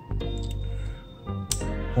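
Background music, with a few sharp clicks from handling a hair clipper, the loudest about a second and a half in.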